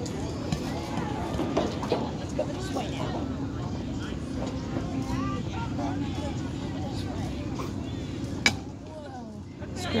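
Spectators chattering in the background, then a single sharp crack about eight and a half seconds in: the bat hitting the ball for a base hit.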